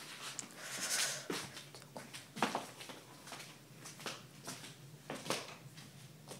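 Rustling and knocking of a handheld phone being moved and rubbed against clothing, with a louder rustle about a second in and sharp knocks near two and a half and five seconds in.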